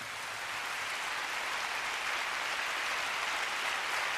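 Concert audience applauding at the end of a song, the clapping swelling over the first second and then holding steady.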